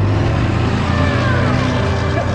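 Pickup truck engine running as the truck drives past and away along a gravel road.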